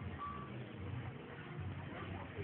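A single short, high, steady beep a fraction of a second in, over a continuous low rumble.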